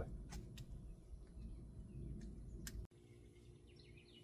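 Faint outdoor background: a low rumble with a few light clicks, then faint bird chirps in the second half.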